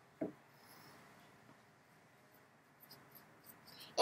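Faint scratchy strokes and light taps of a paintbrush working acrylic paint, with one short soft thump just after the start.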